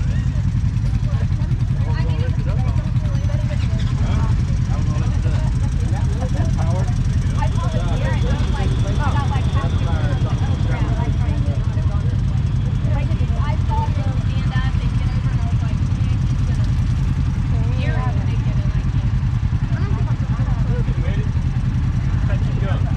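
Off-road vehicle engine idling steadily, a continuous low rumble, with several people talking over it.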